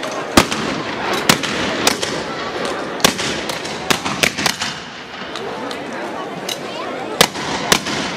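Shotguns fired at close range in quick, irregular succession: about a dozen sharp blasts over the chatter of a street crowd.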